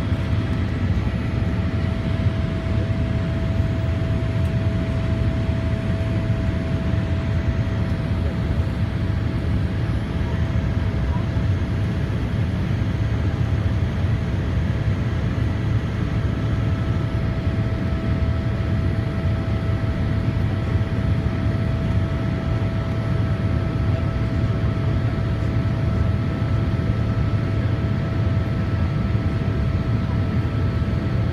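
Cabin noise of a Boeing 787 climbing after takeoff: a steady deep drone from its twin turbofan engines and the rushing airflow, with a thin steady tone running through it.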